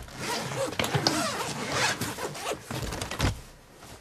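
A soft suitcase's zipper being pulled open, then fabric rustling and a few soft thumps as clothes are lifted out of the case.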